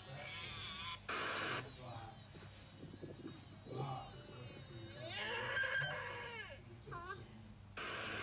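A sheep bleating at the start, then a deer giving a long wavering call about five seconds in. A short burst of television static hisses near the end.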